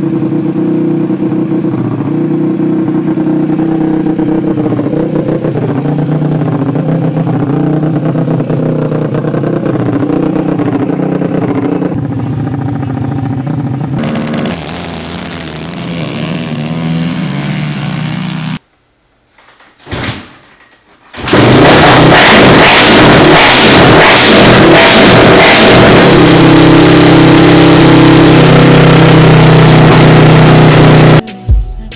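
Honda TRX450R single-cylinder four-stroke engines heard in a run of cuts: one runs steadily at first, a quieter pass follows from about 12 s, there is a short silent gap, then from about two-thirds through a very loud, distorted revving that is held steady at high rpm on a dyno.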